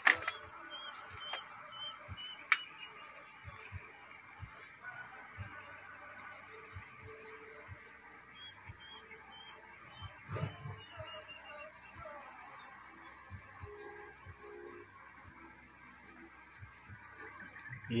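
Outdoor ambience: a small bird calling in short runs of quick repeated chirps, twice, over a steady high-pitched whine, with a few faint clicks.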